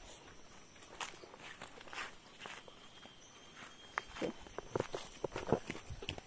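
Footsteps walking over dry leaf litter and forest ground: irregular crunching steps that come thicker and louder in the second half.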